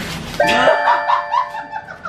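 A chime-like sound effect of several held tones starts about half a second in and lasts over a second, over wrapping paper being torn open.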